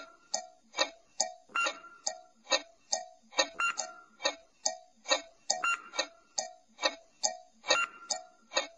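Clock-ticking sound effect for a quiz countdown timer: a steady tick-tock, a little over two ticks a second.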